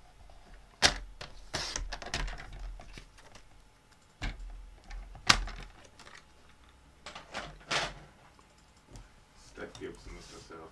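Sliding-blade paper trimmer cutting a strip of white card stock: a sharp click about a second in, then a scrape as the blade runs through the card. More clicks and scraping follow as the card is repositioned and cut again, with paper rustling between.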